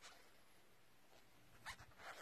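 Near silence with faint rustling from a metal crochet hook being worked through yarn stitches: a soft scratch at the start and a short scratchy cluster near the end.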